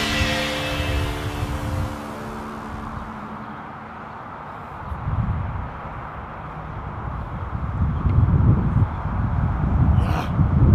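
Background music with held notes fades out over the first two or three seconds. It leaves a low, uneven outdoor rumble that swells about five seconds in and again near the end.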